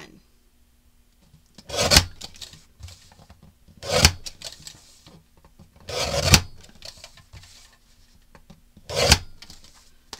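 Small sliding-blade paper trimmer cutting through patterned cardstock panels: four short scraping strokes of the blade along the rail, about two to three seconds apart, each ending sharply.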